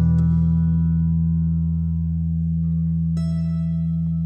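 Schecter electric bass guitar holding a long low note that rings on and slowly fades, over the song's backing music. A higher held chord joins about three seconds in.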